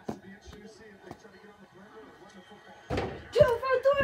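Faint football-broadcast commentary in the background, with a single sharp knock right at the start. About three seconds in, a much louder voice cuts in suddenly.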